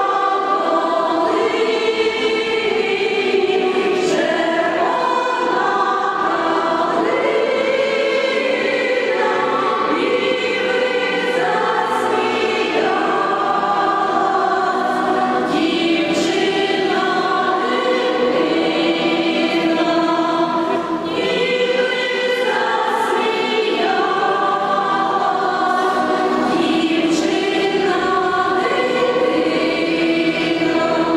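Women's folk choir singing a slow song in several voice parts, with phrases that swell and break, accompanied by an accordion, with the reverberation of a church hall.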